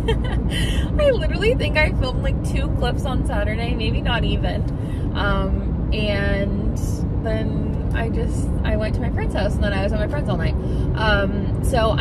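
A woman's voice over the steady low rumble of a car's engine and road noise, heard inside the moving car's cabin.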